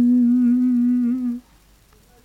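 A single voice humming one long held note to close the song. The note wavers slightly near its end and stops about a second and a half in.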